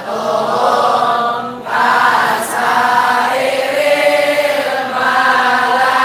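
A group of male voices chanting a religious recitation in unison, in sustained phrases of a few seconds with short breaks between them.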